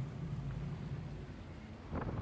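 Vaporetto waterbus engine running with a steady low hum over an even wash of outdoor background noise.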